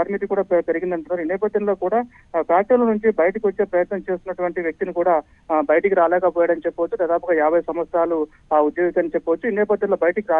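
A man speaking Telugu over a telephone line, his voice narrow and thin. He talks on steadily with only brief pauses.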